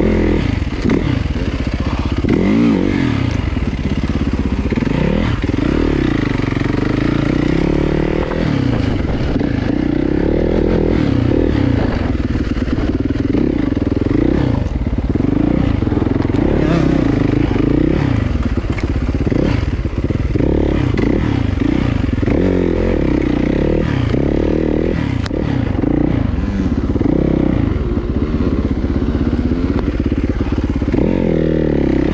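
Off-road dirt bike engine under way on a rough trail, its pitch rising and falling repeatedly as the throttle is opened and closed.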